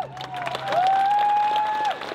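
Audience applauding and cheering: dense clapping with several long, high, held shouts rising above it.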